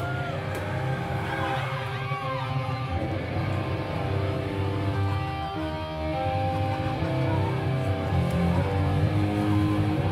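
Electric guitar and bass guitar playing a slow intro of held, ringing notes, the band's sound swelling gradually louder.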